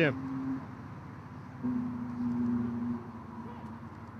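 Faint open-air ambience of a football ground with a low steady hum that stops shortly after the start and comes back for about a second and a half in the middle.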